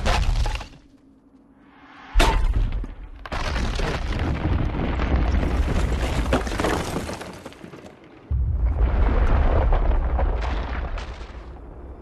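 Film sound effects of crashing, shattering ice over deep booming rumble. After a short lull a sudden crash comes about two seconds in, with breaking noise running on. A second sudden burst of crashing and rumble comes about eight seconds in and fades near the end.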